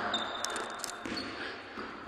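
Basketball play on a gym's hardwood court: a thin high sneaker squeak and a quick run of sharp taps from the ball and shoes in the first second, then quieter court noise ringing in the large hall.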